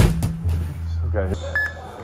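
A heavy strongman dumbbell dropped onto a drop pad lands with a thud, followed by a smaller knock. A steady low hum runs underneath, and a short beep sounds near the end.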